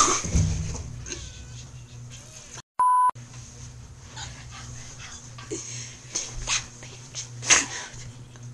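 Girls laughing in breathy bursts, with a short, loud, steady electronic bleep about three seconds in, right after the sound cuts out for a moment.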